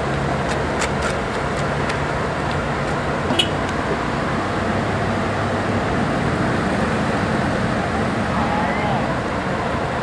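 Scania L113CRL buses' diesel engines idling with a steady low hum. A few light clicks come about a second in, and faint voices sound in the background.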